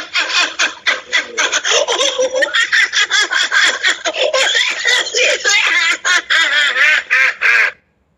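A woman laughing without pause in quick, rhythmic bursts of about five a second; the laughter cuts off suddenly near the end.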